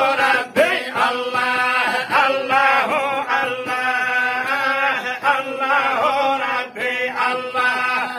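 A group of men chanting a religious supplication together in long held notes, voices only, with brief breaks for breath.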